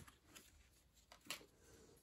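Near silence with a few faint clicks of trading cards being slid off the front of a stack held in the hands, the clearest a little after a second in.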